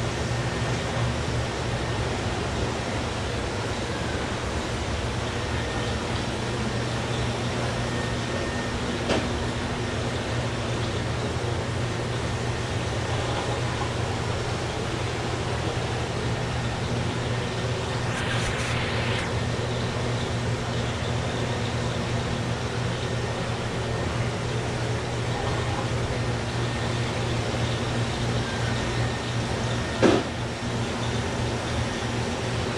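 Steady mechanical hum and hiss of a fish shop's aquarium air pumps and filters, with a constant low hum underneath. A short louder hiss comes a little past halfway.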